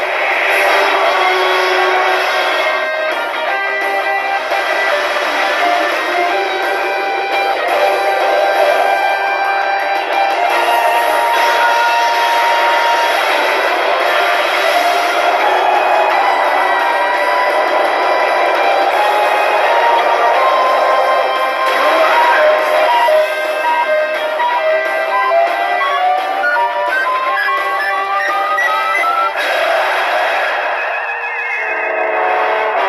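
Pachinko machine's speakers playing its battle-sequence music, with a stepped run of rising notes near the end.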